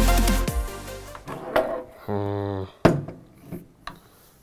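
Electronic dance music with a heavy beat cuts off in the first half second. Then the wooden-stocked Diana Mauser K98 PCP air rifle is handled: a few clicks and one sharp wooden knock about three seconds in, with a short hummed "hmm" between them.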